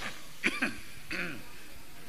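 A man coughing, two sharp coughs about half a second in, then clearing his throat about a second in.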